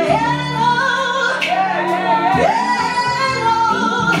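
A woman singing live with a band. Her long held notes break into a run of quick rising and falling notes in the middle, over sustained chords from the band.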